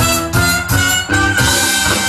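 A live soul band plays an up-tempo number with saxophones, trumpet, drums, bass and electric piano, the beats accented about three times a second. A little past halfway the band goes into a held chord with a cymbal wash.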